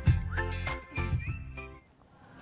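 Short, bright television ident jingle: regularly struck pitched notes with a brief rising glide in the middle, fading out near the end.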